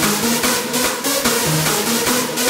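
Hardstyle electronic dance track playing at full energy: a fast kick drum at about four beats a second under a bass line that steps between notes, with bright synths above.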